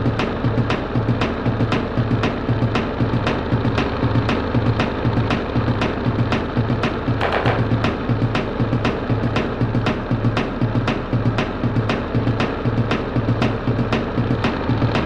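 Live electronic music played on synthesizers and drum machines: a fast, even beat of pulsing bass and sharp clicking percussion that runs on without a break.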